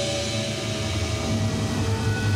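Dramatic television background score: a sustained low, rumbling drone with a hissing wash and a few held tones over it.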